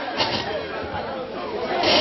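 Chatter: several people talking over one another, with no single clear voice.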